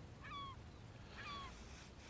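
Faint bird calls: two short falling notes with overtones, about a second apart.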